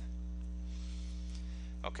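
Steady electrical mains hum with a faint hiss on the recording, unchanging throughout, with a short spoken "okay" at the very end.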